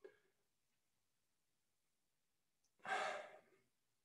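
A man's single breathy exhale, like a sigh, about three seconds in, as he works through an arm-pulling exercise; otherwise near silence.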